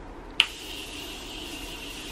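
A makeup spray bottle misting onto the face: a sharp click about half a second in as it is pressed, then a steady hiss of spray.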